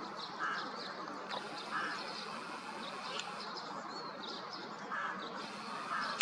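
Ducks on a lake giving three short quacks, about half a second, about two seconds and about five seconds in, with a few small high bird chirps over a steady outdoor hush.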